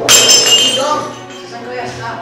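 A sharp crash at the start with high, bright ringing that dies away over about a second, over background music.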